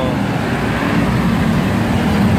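Road traffic: a steady, loud low rumble of vehicle engines.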